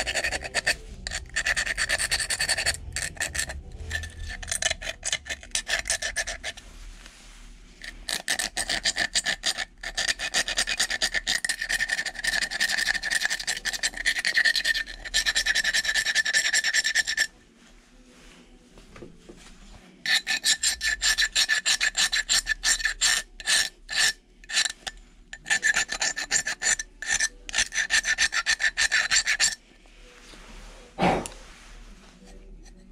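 A hobby knife blade scraping the jagged broken rim of a mug in rapid repeated strokes, trimming the broken edge down, with a thin squeaky ring to each stroke. The scraping stops for about three seconds a little past halfway, then starts again.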